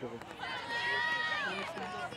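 Voices shouting and calling out across a softball field during a live play: drawn-out calls from players or spectators, with no words clear enough to make out.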